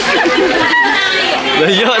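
Chatter: several people talking over one another at close range, voices overlapping throughout.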